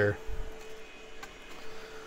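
Geeetech Giantarm D200 3D printer's fans humming quietly and steadily while the nozzle is hot, with a faint click about a second in.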